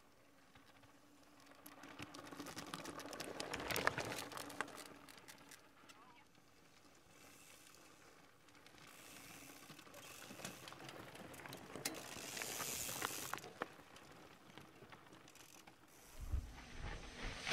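Mountain bikes passing close by on a rocky dirt trail, the freewheel hubs ticking and tyres crunching over stones. The sound swells and fades twice, once peaking about four seconds in and again near twelve seconds.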